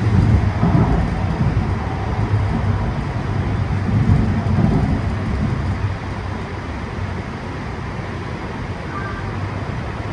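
Light rail train running, heard from inside the passenger car: a steady low rumble that swells louder about a second in and again around four to five seconds in, then eases.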